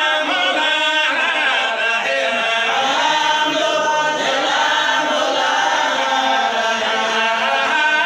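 A group of voices chanting together in one continuous stream.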